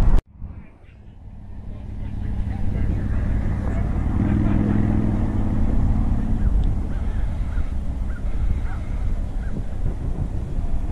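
Wind buffeting the microphone in a low rumble. The sound cuts out suddenly just after the start and swells back over the next couple of seconds. A steady pitched hum comes in for about two seconds in the middle.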